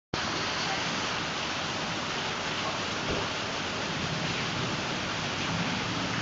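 Heavy rain falling steadily, a constant even hiss of a downpour.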